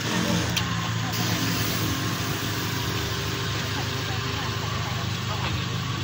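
An engine idling steadily, a low even hum with no revving.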